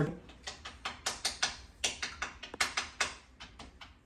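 Playing cards being shuffled and handled on a table: a quick, uneven series of light clicks and taps, several a second.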